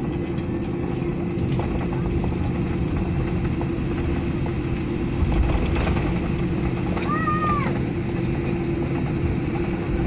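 Cabin noise inside a Boeing 787-8 Dreamliner taxiing after landing: a steady hum with a low rumble and a steady tone throughout. There is a louder bump a little past five seconds in, and a short high tone that rises and falls about seven seconds in.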